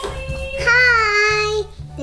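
A toddler singing, holding one long high note for about a second in the middle, over background music with a steady beat.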